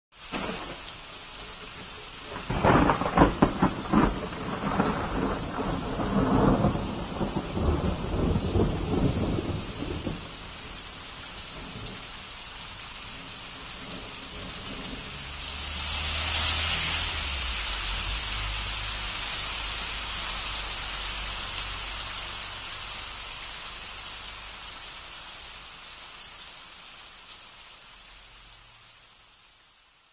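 Thunderstorm: steady rain with a loud crackling peal of thunder from about two to ten seconds in, then a second, lower roll of thunder swelling around sixteen seconds as the rain grows heavier, all fading out toward the end.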